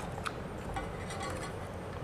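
A few faint clicks of handling as a DC power plug is pushed into the barrel power jack of a fiber media converter, over low steady background noise.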